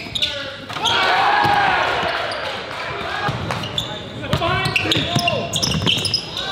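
Basketball game sound in a gym: crowd voices and shouting that swell about a second in, with a basketball bouncing on the hardwood and scattered sharp knocks.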